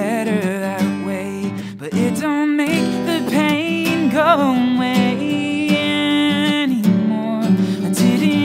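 A man singing over a strummed acoustic guitar, holding long, wavering notes with no clear words.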